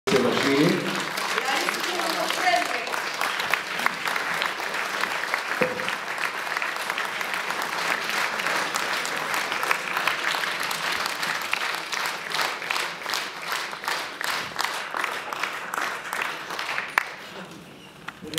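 Audience applauding steadily, the clapping thinning into separate claps during the last few seconds and fading out near the end.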